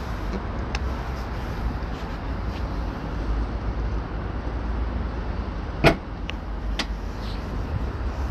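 2021 Ford Kuga's powered tailgate closing, ending in a single loud latching thud about six seconds in, followed by a lighter click.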